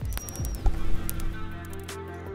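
Underwater audio from a ship's hull-mounted hydrophone: a steady low hum with scattered sharp clicks and a short, high thin whistle that falls slightly in pitch near the start, under soft background music.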